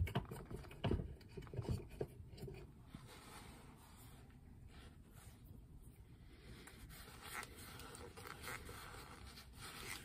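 Faint clicks and rubbing of a tobacco pipe's stem being handled and fitted into the briar bowl's shank, a few small knocks in the first couple of seconds, then quiet room tone.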